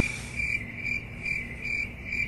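Cricket chirping sound effect: a steady run of short, evenly spaced chirps, a little over two a second. It is the stock 'crickets' gag used for an awkward silence.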